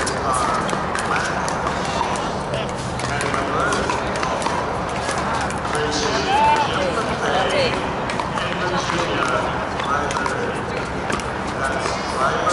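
Indistinct chatter of many voices, with frequent sharp pops of pickleball paddles hitting plastic balls, scattered irregularly and overlapping.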